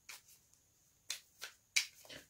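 A deck of tarot cards being shuffled by hand, giving sharp card-on-card snaps: a faint one at the start, then three in quick succession from about a second in.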